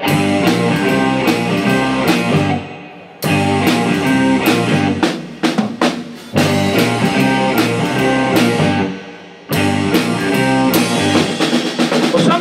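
Live blues-rock band playing an instrumental passage on electric bass, electric guitar, keyboard and drums. The band stops short a few times, leaving brief gaps of a second or less, and comes straight back in with hard hits each time.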